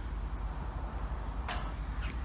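Quiet outdoor ambience: a steady high-pitched insect chorus, like crickets, over a low steady rumble, with one brief faint noise about one and a half seconds in.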